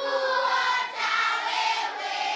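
A group of schoolchildren singing together, holding notes that step from pitch to pitch, with a short break about a second in.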